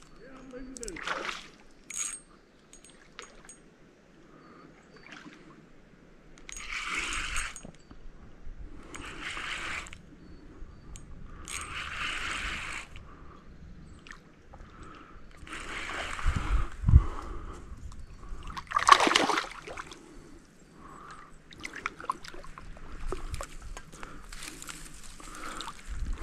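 A hooked largemouth bass splashing at the water's surface during the fight, in several separate bursts of about a second each.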